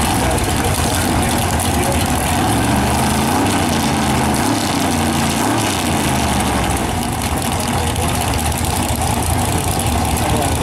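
Drag-racing car engines idling with a loud, heavy rumble. Around the middle the engine note rises and falls a few times as the throttle is blipped while the cars creep up to stage.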